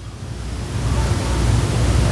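A steady rushing noise with a low rumble underneath, swelling gradually louder.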